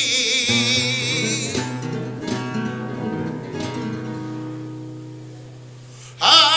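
Flamenco guitar playing a taranto passage on its own between sung lines, chords and bass notes ringing out and growing steadily quieter toward the end. A held sung note ends right at the start.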